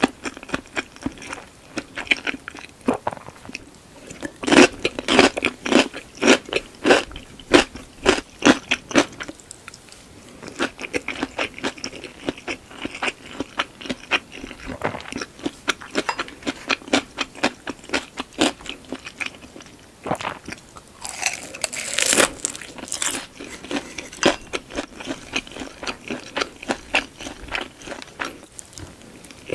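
Close-miked chewing of deep-fried shumai (pork dumplings), with crisp crunching bites. The crunches come thickest about five to nine seconds in, and the loudest stretch comes about twenty-one seconds in.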